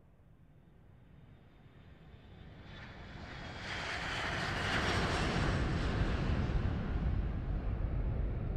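A rushing noise that swells steadily louder over the first five seconds, then holds at a strong, steady level.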